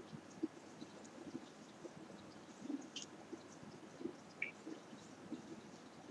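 Faint rustling and handling of a loose-stitched crocheted yarn garment being adjusted around the shoulders, with a few small soft clicks.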